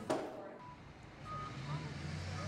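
Faint low hum of a vehicle engine, coming in about halfway through and holding steady, with a few faint short tones above it.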